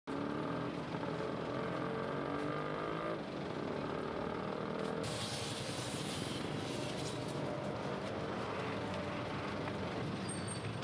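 A vehicle engine running steadily, with a hiss that joins about halfway through.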